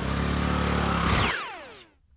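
Motor scooter engine running steadily. About a second in, a high whooshing sweep falls steeply in pitch as the engine sound fades away.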